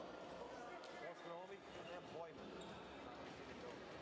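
A handball bouncing now and then on the hardwood floor of a sports hall, under faint voices of players calling out in the hall.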